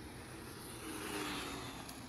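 Overvolted electric mini bike's brushed motor, run on 72 volts instead of its stock 36, whining as the bike passes. The whine slowly drops in pitch, and the road and wind hiss swells a little past the middle and fades.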